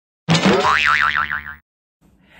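Cartoon 'boing' sound effect: a springy twang whose pitch wobbles rapidly up and down, starting about a quarter second in and lasting just over a second.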